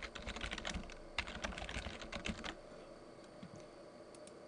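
Computer keyboard being typed on: a quick run of keystrokes for about two and a half seconds, then the typing stops.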